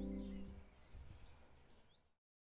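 Closing background music fades out within the first half-second, leaving faint bird chirps.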